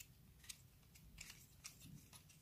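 Near silence with a few faint, short clicks, about half a second apart, like small objects being handled.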